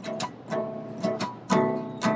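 Acoustic guitar strummed, several strokes of ringing chords with the loudest about one and a half seconds in.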